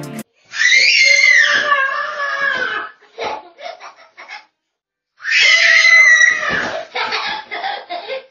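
A toddler shrieking in play: two long, high-pitched squeals of about two seconds each, with a few short squeaks between and after them.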